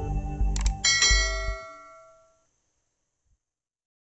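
Subscribe-button animation sounds over the end of an outro jingle: a quick double click, then a bright bell chime that rings out and fades. The low music underneath stops about a second and a half in.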